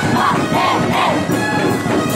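A group of street dancers shouting together: a run of short rising-and-falling cries in the first second, over steady street-dance music.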